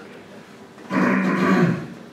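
A person's voice making one drawn-out, wordless sound of just under a second, starting about a second in.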